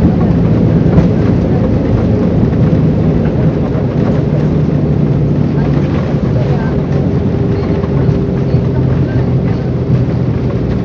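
Airliner cabin noise during the landing roll: a loud, steady rumble of engines and wheels on the runway with low humming tones, and a sharp knock about a second in.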